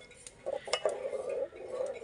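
Steel slotted spoon stirring boiling milk in an aluminium pot, clinking against the metal a few times.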